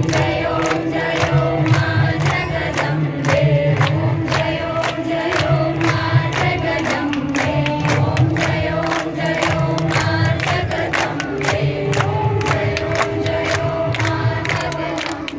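A group of women singing a devotional song together in unison, with steady rhythmic hand clapping of about three claps a second.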